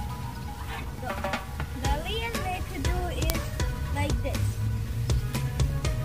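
Background music with a steady beat and held tones. A sung vocal line comes in about a second in and drops out after about four seconds.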